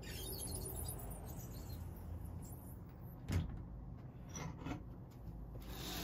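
A sliding glass door being handled and slid open, with rustling and scraping and one sharp knock a little past halfway.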